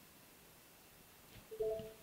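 Near silence, then about one and a half seconds in a brief two-note electronic notification chime from the trading platform, signalling that a limit order has been created.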